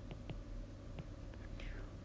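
Faint, irregular clicks of a stylus tapping on a tablet screen during handwriting, several a second, over a low steady hum, with a faint breath near the end.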